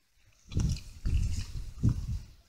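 Dog growling in three low, rough rumbles while gnawing a rosca held in its paws.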